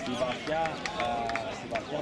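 Several voices calling out and talking over one another, with a few short sharp clicks late on.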